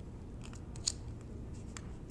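Plastic ID card being handled in a wallet's clear plastic sleeve: a few small clicks and scrapes, the loudest a little under a second in, over a low room hum.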